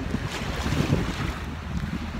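Wind blowing across a phone's microphone: a low, uneven rumble with no pauses.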